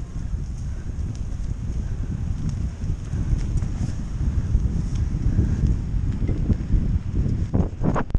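Mountain bike rolling over a dirt trail, an irregular rumble and rattle of tyres and frame with wind buffeting the camera microphone. A louder brushing knock comes near the end as a gloved hand covers the camera.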